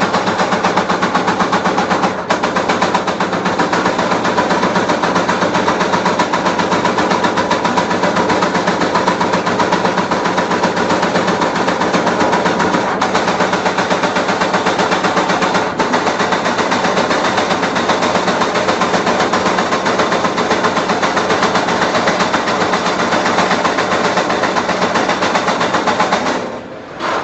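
Yawei HPE servo-driven turret punch press punching sheet metal at high speed: a continuous rapid run of punch strokes, with a steady machine hum underneath.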